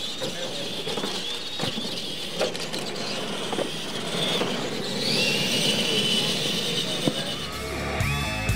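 Electric motors of radio-controlled monster trucks whining as they race, the pitch rising and falling with the throttle and climbing about five seconds in, with a few sharp knocks from the trucks on the track. Rock music comes in just before the end.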